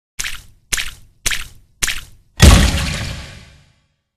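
Edited-in intro sound effects: four short, sharp whacks about half a second apart, then a louder hit that fades away over about a second.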